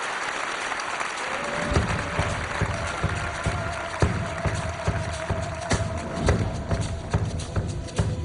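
Audience applause, then a tango band starting its introduction about two seconds in: a steady accented beat with a long held melody note above it, the applause carrying on underneath.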